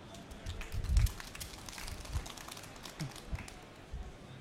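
Thin, scattered audience applause, heard as many separate claps, with a dull low thump about a second in.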